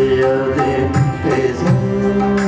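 Live Afghan classical music: a male voice singing long held, slowly bending notes over a harmonium drone, with tabla strokes keeping time.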